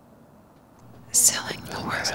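Quiet hiss for about a second, then a person whispering rapidly.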